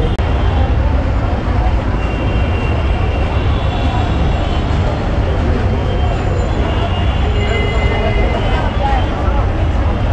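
Busy street ambience: a steady low rumble of traffic with background voices.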